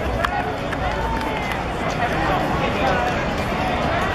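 Ballpark crowd chatter: many voices talking at once in the stands, steady and indistinct, with one sharp click about a quarter second in.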